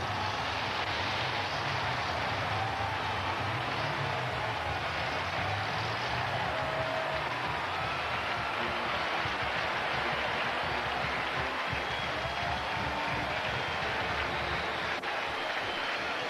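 Large stadium crowd cheering and applauding, a steady roar celebrating the home team's touchdown.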